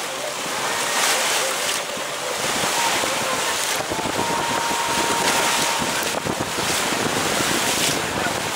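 Boat under way at sea: a steady wash of water rushing past the hull, with wind buffeting the microphone.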